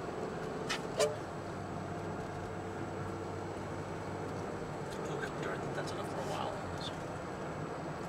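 Steady road and engine noise heard inside a car's cabin while driving at highway speed, with one short sharp click about a second in.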